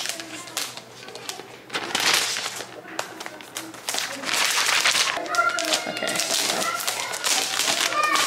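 Plastic and paper packaging wrap rustling and crinkling as it is pulled off a new laptop, in two bursts about two seconds apart. Faint voices can be heard in the background over the second half.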